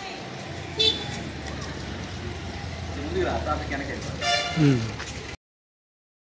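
Street ambience with vehicle horns: a short toot about a second in and a longer honk near the end, over background voices, then the sound stops abruptly.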